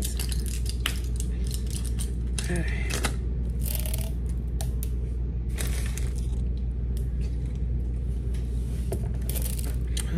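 Plastic handling clicks and crinkles from a pill blister pack and a large plastic water bottle, with drinking from the bottle to swallow tablets. A steady low hum runs underneath throughout.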